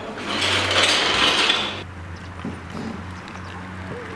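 Loose plastic Lego bricks clattering and rattling as a child's hands churn through a big bin of them, lasting about a second and a half before it stops and only a low steady hum is left.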